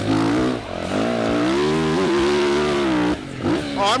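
Yamaha YZ450F four-stroke single-cylinder dirt bike engine heard through the helmet mic, revving up about half a second in and pulling steadily under throttle, then dipping briefly as the throttle comes off about three seconds in.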